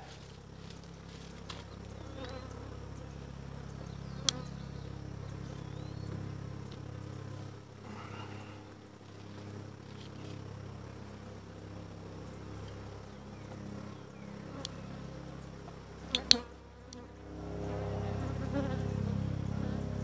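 Honeybees buzzing around open hives in a steady, wavering hum. A sharp knock sounds about four seconds in and a louder double knock near the end.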